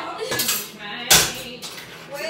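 Metal pan and cooking utensils clanking, with one sharp, ringing clank about a second in.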